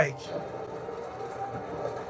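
Faint, steady background audio from the anime episode playing under the reaction: a low, even mix with no distinct event.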